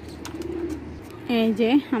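Pigeons cooing low and steadily, and a woman starts talking loudly over them just over a second in.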